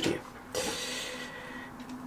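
Faint rustling and rubbing of hands picking up and turning a small USB charger socket over a wooden tabletop.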